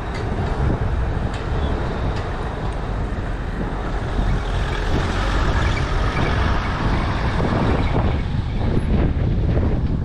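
Street traffic: vehicles passing on the road, loudest about halfway through, over a steady low rumble.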